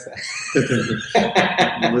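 A man laughing, breathy and hissing for about the first second, then more voiced.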